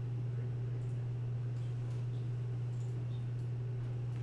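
A steady low hum runs on without change, with a few faint clicks over it.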